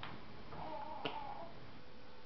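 Two faint sharp clicks about a second apart, with a faint short pitched voice-like sound between them.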